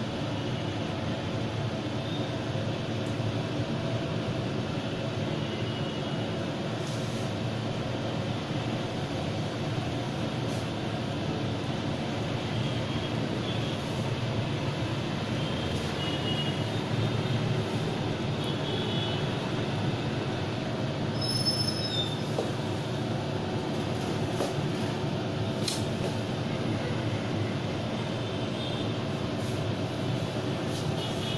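Steady low mechanical rumble with a faint hum, unchanging and with no distinct impacts.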